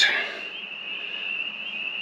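Steady high-pitched chorus of night-calling creatures, holding one unbroken pitch over a faint hiss.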